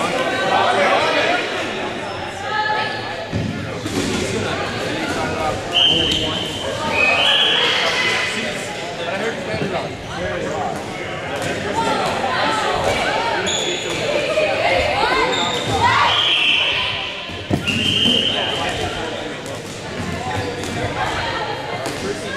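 Echoing gym hubbub: many players talking and calling out at once, with rubber dodgeballs bouncing on the hardwood floor now and then.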